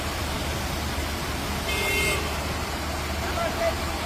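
Steady rushing noise of rain and floodwater on a flooded city street, with a short car horn toot about halfway through, lasting about half a second.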